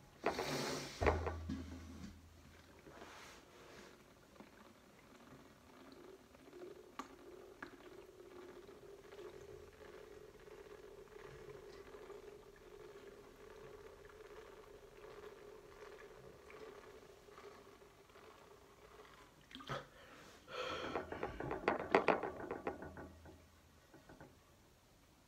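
A man chugging a sports drink from a plastic bottle, mostly faint gulping and swallowing. It is louder near the start and again near the end, with clicks from the bottle and mouth, and a faint steady hum through the middle.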